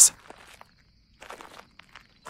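Footsteps: two soft steps about a second apart.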